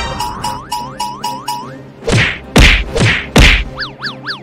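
Edited-in cartoon sound effects over background music: a quick run of rising boing-like slides, then three loud hits about half a second apart as the fake bellies bump, then a zigzag of rising and falling whistle slides near the end.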